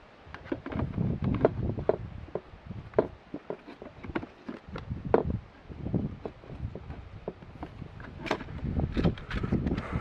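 Irregular plastic clicks and knocks from a white HRC fuse holder's housing and parts being handled and pushed into place, with a sharper click about eight seconds in and a low rumble underneath.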